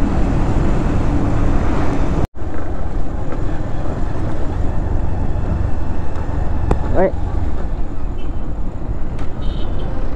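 Motorcycle ride on a road: steady wind rumble on the microphone over the running engine. The sound drops out for an instant a little over two seconds in.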